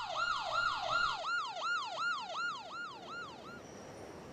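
Electronic siren in a fast rise-and-fall yelp, about three cycles a second, fading away and stopping about three and a half seconds in.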